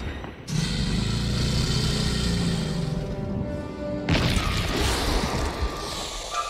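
Dramatic film-score music with held chords over a deep, steady rumble, broken by a sudden loud hit about four seconds in.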